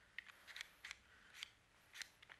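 Near silence: quiet room tone with about half a dozen faint, short clicks scattered through it.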